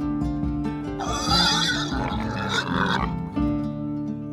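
A harsh, wavering animal call lasting about two seconds, starting about a second in, over steady background music.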